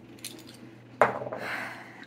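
Fountain pen and ink bottle being handled on a desk: a faint click, then a sharper click about a second in, followed by a brief scraping rustle.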